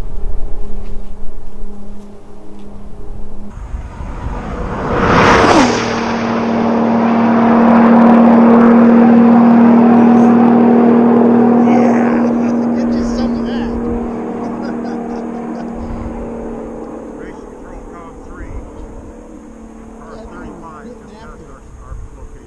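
Wind rumbling on the microphone at first. About five seconds in, a Nissan GT-R race car flashes past at very high speed, a sudden whoosh with a falling pitch. Its engine note then holds one steady pitch as it pulls away, swelling briefly and fading slowly over the next dozen seconds.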